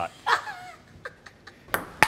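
Ping-pong ball clicking off a paddle and the table on a serve: a few faint clicks, then two sharp ones close together near the end.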